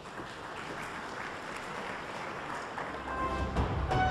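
Audience applauding, with orchestral brass music fading in near the end.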